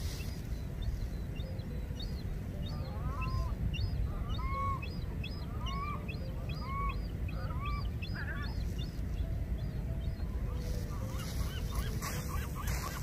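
Birds calling in a run of short repeated calls, roughly one every half second, for several seconds in the middle, over a steady low rumble.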